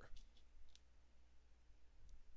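A few faint clicks of LEGO pieces being picked up and handled, against near silence.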